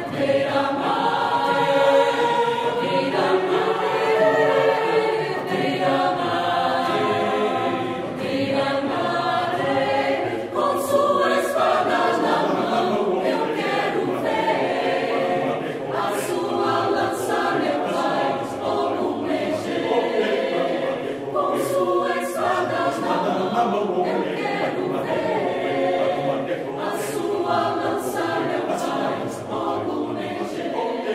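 A large mixed choir singing together, many voices in chorus.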